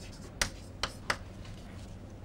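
Chalk writing on a chalkboard: three sharp taps as the chalk strikes the board while the letters of a word are formed, close together within about a second.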